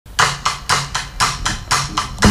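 Drum kit playing alone at a steady pulse, eight sharp strokes at about four a second, with a faint low note held underneath.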